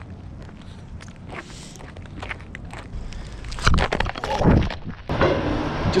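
Footsteps on an icy path, with scattered small clicks, then a burst of loud knocks and rustling about four seconds in as the camera is jostled. Just after five seconds the sound changes to a steadier outdoor background noise.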